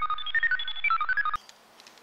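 Electronic computer-style beeping, the wishing machine's sound effect: a quick run of short, steady tones jumping between high pitches, which cuts off suddenly just over a second in.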